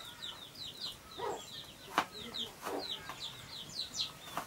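Chickens peeping in a rapid run of short, high, falling notes, with a few lower clucks. A knife chops on a plastic cutting board in a few sharp knocks, the loudest about two seconds in.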